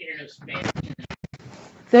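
Rustling and scratching handling noise with a quick run of small clicks, after a faint voice at the start.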